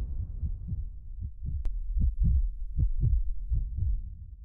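Heartbeat sound effect: low double thumps, lub-dub, about one beat every three-quarters of a second, growing louder as the last of the music dies away.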